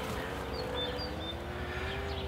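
A faint, steady engine-like drone, its pitch slowly rising, with a few faint high bird chirps about a second in.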